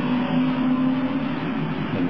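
Steady low hum with hiss: the background noise of a 1969 recording, heard in a pause between words.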